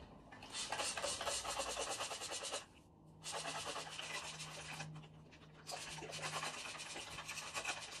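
A handheld spray bottle misting water onto wet curly hair, in three bursts of rapid sprays about two seconds each with short pauses between.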